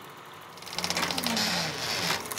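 Film projector running with a rapid, even mechanical clatter that starts under a second in, over a low hum that sinks in pitch: the sound of the film running out at the end of the reel.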